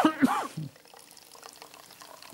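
Water being poured out for a drink, a faint, light trickle that follows a brief vocal sound from a man at the start.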